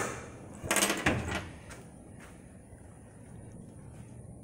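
Trunk lid of a 1961 Chevrolet Impala being unlatched and opened: a sharp click right at the start, then a longer burst of noise about a second in.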